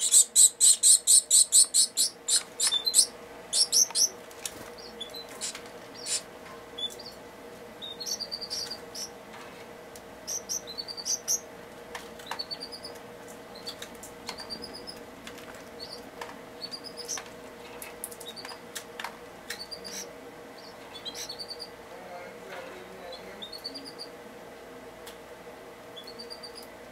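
Gouldian finch chicks begging, a rapid run of loud, high, repeated calls for the first two seconds or so as they are fed, then short, scattered high chirps every second or two. A faint steady hum runs underneath.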